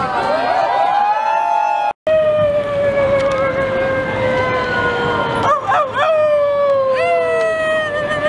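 Voices holding long, high notes that sag slowly in pitch, with several overlapping gliding notes at first. The sound cuts out briefly about two seconds in, then one long note runs, swoops near six seconds and starts again a second later.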